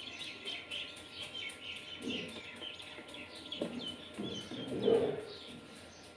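Birds calling in the background: a run of short, high chirps repeating throughout, with a few lower, louder calls, the loudest about five seconds in.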